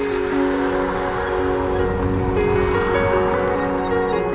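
Background music: soft ambient chords of several long held notes that shift every second or so, over a steady rushing noise.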